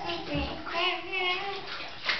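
Small children's high voices and vocalizing over water sloshing in a bathtub, with a short low thump about half a second in.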